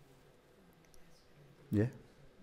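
Speech only: faint voices talking in a small room, then a short, loud 'yeah' from a man close to the microphone near the end.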